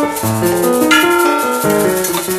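Free-improvised piano and percussion duet: scattered, overlapping piano notes over a high rattle and strikes of small metal percussion (cymbals and bowls).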